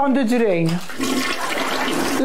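A person speaking in a falling voice, then about a second of rushing, hissing noise with the voice faint beneath it.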